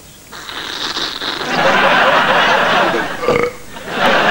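A long, loud slurping suck through a drinking straw as a pint bottle of milk is drained in one go, building to its loudest about halfway through and ending just before the last second. Studio audience laughter mixes in.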